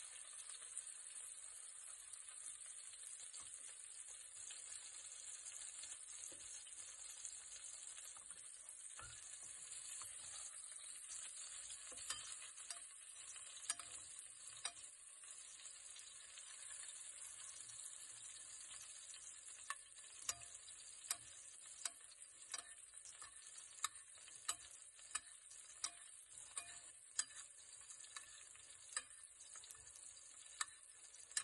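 Steak frying in butter in a stainless steel pan, a steady sizzle. In the second half a basting spoon clinks against the pan about every three-quarters of a second as hot butter is spooned over the steak.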